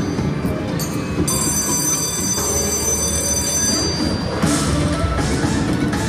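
Bally Fu Dao Le slot machine playing its bonus-feature music and chiming sound effects during the jackpot coin-pick round, with a held high ringing chime from about one second in to nearly four seconds.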